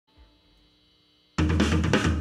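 Near silence with a faint hum, then about a second and a half in a live rock band comes in suddenly at full volume, the drum kit loudest with bass drum, snare and cymbals.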